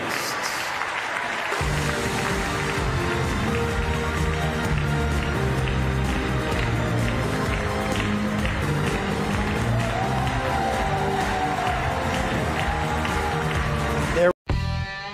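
Crowd applauding, then music with long held chords comes in about a second and a half in and carries on over the applause.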